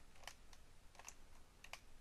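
Near silence with three faint, short clicks from a computer's input devices being worked.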